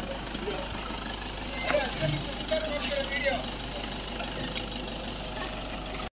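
Steady low hum of an engine running at idle, with a few voices talking briefly around the middle and a soft low thump about two seconds in.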